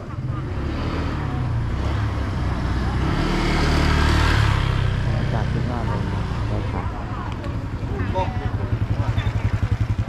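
Motorbike traffic passing close on a street: one vehicle swells past about four seconds in, then a motor scooter's small engine runs close by near the end with a fast, even putter.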